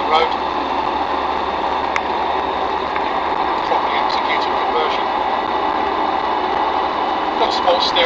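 Inside the cab of a Land Rover Defender 90 Td5 on the move: its 2.5-litre five-cylinder turbodiesel running steadily at cruising speed, with constant engine and tyre noise.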